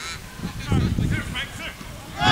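Players shouting on an outdoor football pitch: a few short, distant calls.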